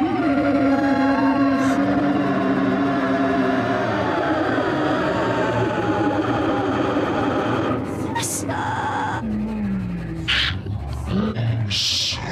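Free-improvised experimental music: voice and electronics with a grand piano played inside, on its strings, making held drone-like tones, then a rougher texture. Near the end there is a falling glide and a few short hissing bursts.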